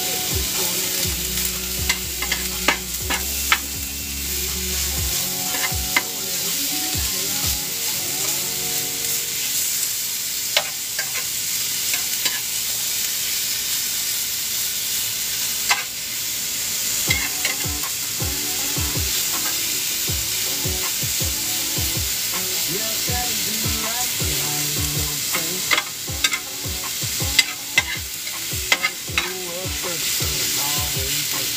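Thin strips of top round steak with vegetables sizzling steadily in a hot pan on a small wood-burning stove. They are being stirred with a utensil that clicks and scrapes against the pan in scattered flurries, most often in the second half.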